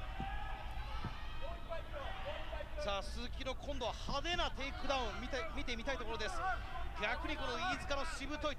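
Arena sound of a fight: several men's voices calling out at once from ringside, sparse at first and then busier from about three seconds in, over a low steady hum.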